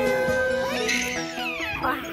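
Baby squealing with laughter: one long held squeal that sweeps up high about halfway through and slides back down near the end, over background music.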